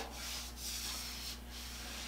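Paintbrush bristles dragged along a wooden window sash in a few quiet rubbing strokes, spreading latex paint, over a steady low hum.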